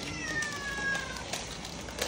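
A cat meowing once: a single drawn-out high call that slowly falls in pitch, lasting about a second.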